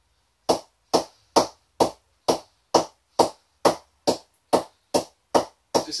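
Leather cricket ball bounced repeatedly on the toe end of a TON Slasher cricket bat's face in a ping test of how the willow responds: an even run of about thirteen sharp knocks, a little over two a second, starting about half a second in.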